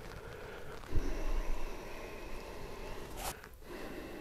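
Handling noises as a walleye is let go and a rod taken up: a dull thump about a second in, followed by a low rumble, and a short sharp rustle a little after three seconds.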